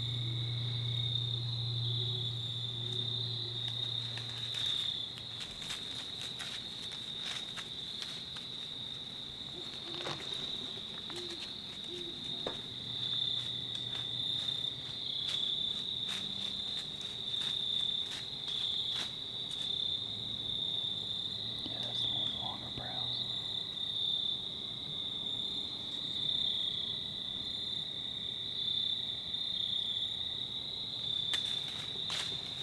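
A steady, high-pitched chorus of crickets trilling without a break. A faint low hum comes and goes underneath, and there are a few faint clicks.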